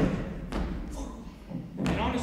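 Two dull thumps, one at the start and one near the end, with a low rumble between.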